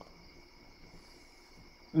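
Faint, steady high-pitched tones over a low hum: background noise coming through an open microphone on a video call.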